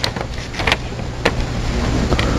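Paper sheets rustling and crackling in a few short bursts as they are handled on a desk, over a steady low hum.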